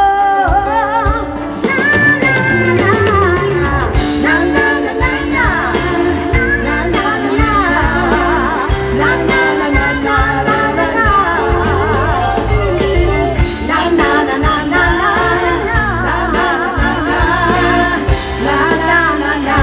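A live pop-rock band playing a song, with singing over electric guitar, keyboards and drums, heard through a concert sound system.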